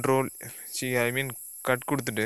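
A person speaking in short bursts, over a steady high-pitched hiss from the recording.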